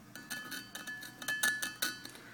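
A thin metal pick tapping and scraping on an aluminum LS1 cylinder head's combustion chamber: a quick run of light metallic clicks and clinks, a few with a short ring.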